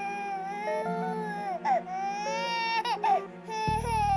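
An infant crying in long wails with short breaks between them, over background music of held low notes; deeper bass notes come in near the end.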